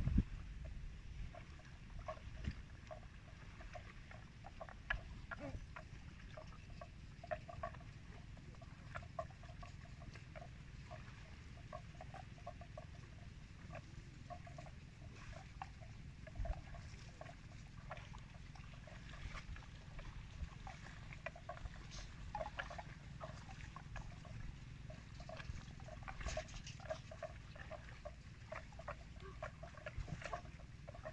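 Water buffalo grazing in shallow water, cropping grass: many short, irregular clicks over a faint, steady low rumble.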